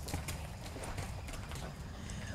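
A horse's hooves stepping on a dirt floor as it is led on a lead rope, faint and irregular.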